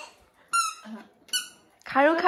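Two short, high-pitched squeaks about a second apart.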